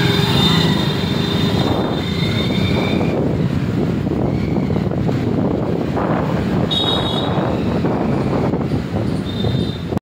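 Riding noise from a motorcycle on a street in traffic: engine and road noise with wind on the microphone. A thin high squealing tone comes and goes three times.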